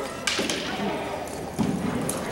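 Two sharp cracks about a quarter second apart near the start: polo mallets striking an arena polo ball. Spectators talk in the background.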